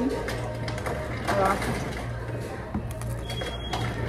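Crunchy taco shell being chewed close to the microphone, a scatter of small crackles, over a steady low hum and faint background music. A brief voice comes in about a second and a half in, and a short high beep near the end.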